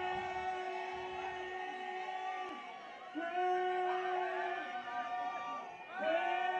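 Live rock band playing a slow opening: two long held notes, each a couple of seconds, rising in at the start, with little bass or drums under them.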